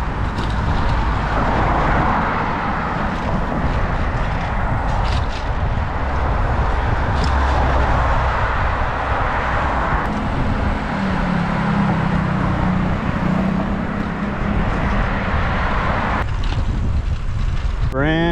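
Wind rushing over a bike-mounted camera microphone while cycling along a road, with passing car traffic. After an abrupt change about halfway through, a low steady vehicle engine hum joins in for a few seconds.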